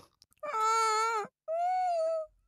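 A cartoon baby dinosaur whining twice in a nasal, closed-mouth voice. The two long notes are a short gap apart, the second a little higher, as it turns down the offered bugs.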